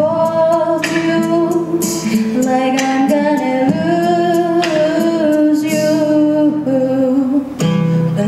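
A woman singing a slow ballad with long held notes over acoustic guitar accompaniment. Her phrase ends shortly before the end, and the guitar carries on.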